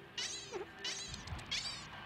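A cartoon rabbit's squeaky, chattering calls: short high squeaks with a wavering pitch, repeating about every half second, four in all, as the rabbit urgently tugs for attention.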